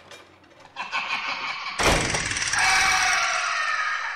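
Intro sound effects: a rising rush of noise, a heavy hit just under two seconds in, then a sustained ringing drone of several pitches that slowly falls.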